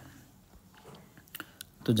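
A short, quiet pause in speech with a few faint clicks about halfway through, then a voice starts talking again near the end.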